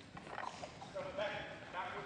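A group of players running across a hardwood gym floor, a quick patter of sneaker footfalls, with voices calling over it from about a second in.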